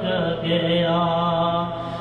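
A man singing an unaccompanied Urdu naat into a microphone. He slides down onto a single long held note, slightly wavering, at the end of a sung line.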